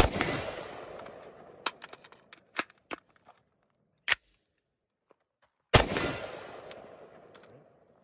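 Two shots from a CZ Bren 2 MS 5.56 short-barrelled carbine, about six seconds apart, each followed by a long echo. Between them come light metallic clicks of a magazine change, then a sharp clack about four seconds in as the bolt is released from lock-back with the side bolt catch.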